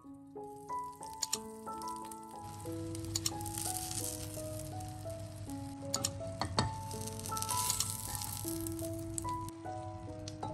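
Oil sizzling in a frying pan under tomato-ring egg slices, growing from about two and a half seconds in, with a few sharp clicks of a metal fork and wooden spatula against the pan. Light piano music plays over it.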